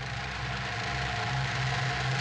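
A tank's engine and tracks rumbling as it passes close overhead: a steady low drone under a rushing noise that grows somewhat louder, on an old film soundtrack.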